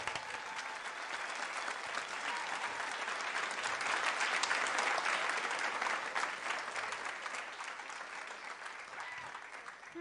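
Concert audience applauding in a theatre, swelling to its loudest around the middle and tapering off toward the end.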